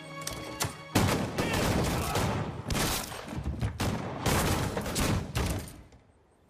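Heavy gunfire: a dense, continuous volley of shots that starts suddenly about a second in and stops abruptly just before the end. A held musical chord fades out under the opening second.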